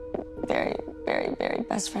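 A woman speaking in short, broken, tearful phrases over soft background music with sustained tones.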